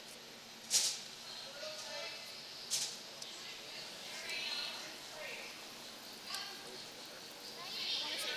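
Faint women's voices calling on the ice in a curling arena, louder near the end, with two short swishes about one and three seconds in.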